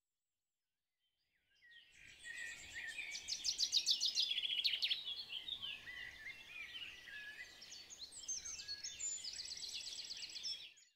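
Silence for about a second and a half, then birdsong fades in: several birds chirping and trilling quickly over a faint outdoor hiss.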